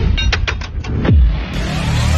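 Motorcycle engine sound cut into an edited riding sequence: a run of quick clicks, a falling sweep about a second in, then the engine pitch rising near the end.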